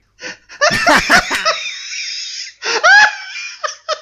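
A person laughing loudly in several bursts.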